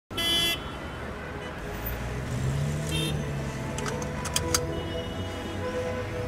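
Car start-up sounds: a loud electronic chime right at the start, then the engine starting and settling around two to three seconds in, with a short second chime, followed by a few sharp clicks.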